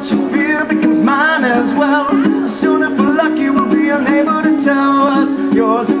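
Live music: a ukulele strummed in steady chords under a man's singing voice, which wavers on held notes.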